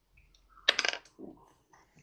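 A ten-sided die rolled onto a table: a quick clatter of small hard clicks about two-thirds of a second in, then a faint knock as it settles.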